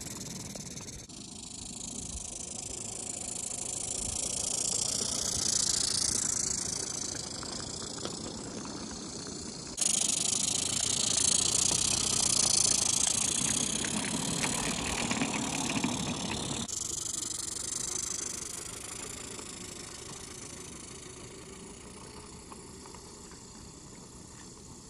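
A small live steam garden-railway locomotive running with its train, hissing steam, with a light rattle of the wagons on the track. The hiss swells and fades and is loudest for several seconds past the middle, then dies down toward the end.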